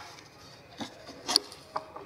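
A pause in a talk heard through the podium microphone: low room tone with three brief, soft rasping rustles.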